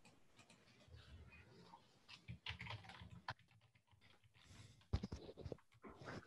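Faint keyboard typing and clicks picked up through a video-call microphone, coming in irregular clusters, the loudest click about five seconds in.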